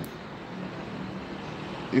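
Steady low background hum and hiss, with a faint drone from about half a second in, in a pause between words.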